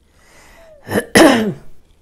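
A woman clearing her throat about a second in: a short first push, then a louder, rougher one that falls in pitch.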